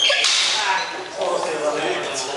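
Blunt steel swords striking, a single sharp clash right at the start with a brief metallic ring. A short hiss of movement follows, then voices in the hall.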